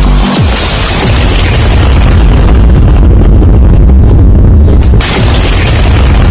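Loud cinematic intro music built on a deep booming rumble, with a hiss that fades over the first couple of seconds and a new burst of noise about five seconds in.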